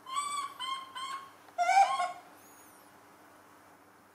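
Baby macaque giving four short high-pitched calls in quick succession, the last one the loudest.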